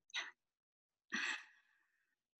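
One short sigh about a second in, with near silence around it.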